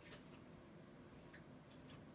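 Near silence broken by a few faint, short crinkles and ticks as a hockey card pack is opened and handled: a couple just after the start and three more in the second half.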